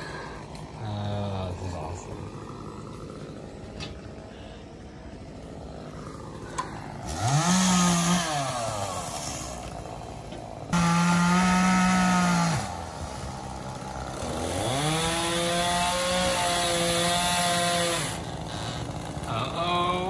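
Two-stroke chainsaw revving to full throttle three times, each run lasting a few seconds: the pitch rises, holds steady and drops back to idle between cuts.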